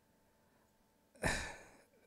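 A man's sigh: one breathy exhale close to the microphone, starting a little over a second in and fading away.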